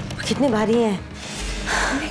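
A woman's voice speaking briefly, then a breathy gasp, over background music. A low drone in the music comes in a little past halfway.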